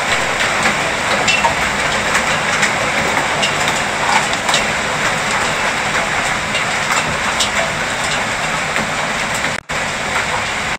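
Hailstones and heavy rain pelting a balcony: a dense, steady hiss of rain dotted with many sharp ticks and knocks of hailstones striking the deck boards. The sound breaks off briefly just before the end.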